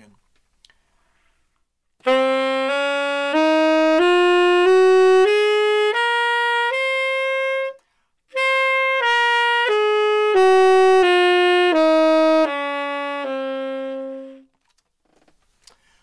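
Tenor saxophone playing the C Locrian mode in concert pitch: eight notes up one octave, a short breath, then eight notes back down. The top note and the final low note are held longer.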